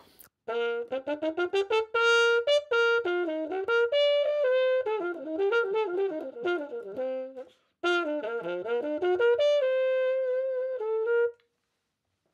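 Trumpet with a Denis Wick adjustable cup mute, its cup pushed in all the way, playing a quick phrase of many notes, then after a short break a second phrase that ends on a held note. The fully pushed-in cup quiets and mellows the tone.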